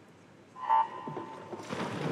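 Electronic starting beep of a swimming race: one steady tone about a second long. Near the end it gives way to the splash of the swimmers diving into the pool.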